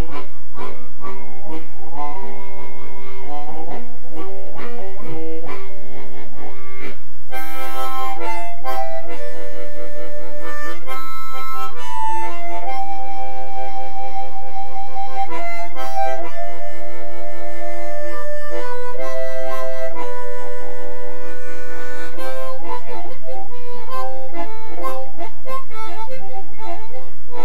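A harmonica played cupped in both hands, loud and close. It starts with quick runs of short notes, plays brighter, longer held notes from about seven seconds in, and returns to quicker notes near the end.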